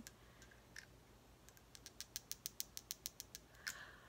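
Faint rapid clicking, about seven even clicks a second for roughly two seconds, followed by a short soft rustle near the end.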